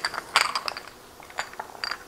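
Small glass spice jars with metal caps clinking against one another as they are gathered up by hand. Several sharp clinks with a short high ring come bunched about half a second in, with a few more near the end.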